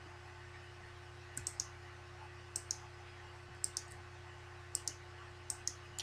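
Computer mouse button clicking: five quick pairs of clicks about a second apart, starting over a second in, over a faint steady electrical hum.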